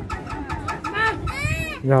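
Short high bird calls that rise and fall in pitch, with a louder, higher run of them about one and a half seconds in, over people talking.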